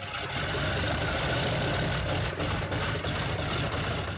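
Douglas DC-3's radial piston engine running just after start-up, a rapid, uneven pulsing rumble of the cylinders firing.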